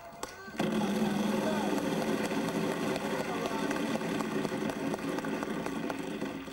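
A game-show prize wheel spinning, its pointer flapper ticking rapidly against the wedge pegs, under crowd shouting.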